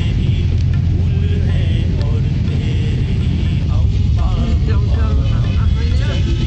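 Steady low rumble of a car's engine and tyres on the road, heard from inside the moving car.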